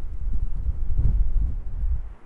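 Wind rumbling on the microphone, with soft footsteps about every three-quarters of a second from walking along a grassy clifftop path.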